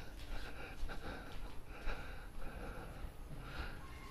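Faint breathing and soft shuffling close to the microphone as the person walks about, over a low steady rumble.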